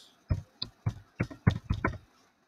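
Computer keyboard being typed on: about seven short, sharp keystrokes in quick succession.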